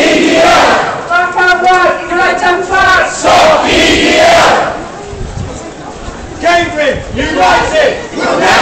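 Crowd of protest marchers shouting a slogan together in loud, repeated bursts. The shouting drops away for about a second and a half a little past halfway, then starts again.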